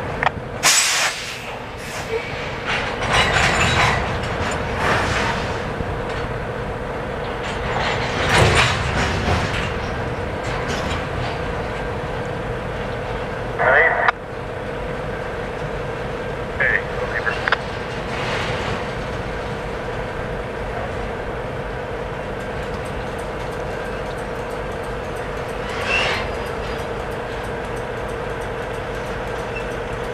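Double-stack intermodal freight train rolling past: steady rumble of wheels on rail with a steady hum, and several short, louder bursts of clanking or squealing from the passing cars.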